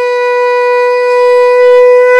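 A conch shell (shankha) blown in one long, steady note, growing slightly louder towards the end.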